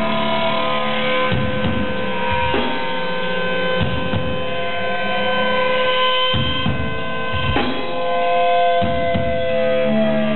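Electric guitars ringing through their amplifiers in long held tones and feedback, over a steady amp hum, with scattered irregular drum hits instead of a steady beat. It is a loose, rhythmless stretch between riffs in a live punk/rock set.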